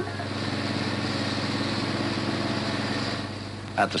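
A motor vehicle engine running steadily, easing off shortly before the end.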